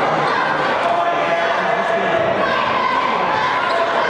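A basketball dribbled on a hardwood gym floor under the steady noise of a crowd of spectators talking and calling out in a large hall.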